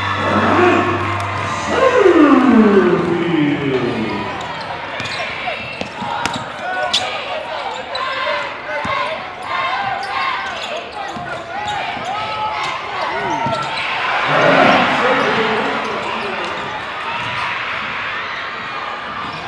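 Live gym sound from a high school basketball game: a basketball bouncing on a hardwood court, sneaker squeaks and voices. About two seconds in comes a loud, drawn-out voice falling in pitch, and around fourteen seconds in the crowd cheers briefly.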